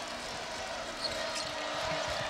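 A basketball being dribbled on a hardwood court, with a few faint knocks over the steady noise of an arena crowd.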